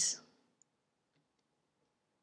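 A few faint, sparse clicks of a computer pointing device selecting one on-screen object after another.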